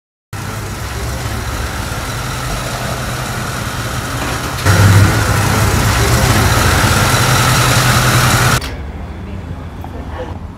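Van engine running steadily, growing louder in a sudden step about halfway through, then cut off abruptly near the end.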